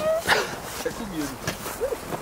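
Huskies whining and yipping in their kennel pens: a string of short cries that rise and fall in pitch, with one sharp yelp near the start.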